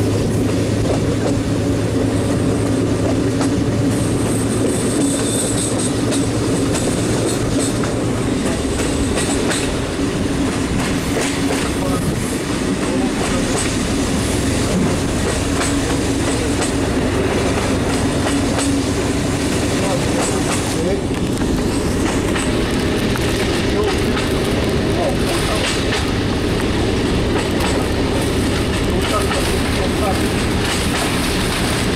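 A moving railcar heard from inside: a steady engine drone with the run of wheels on the rails and faint clicks over rail joints. The engine's low note changes about eight seconds in.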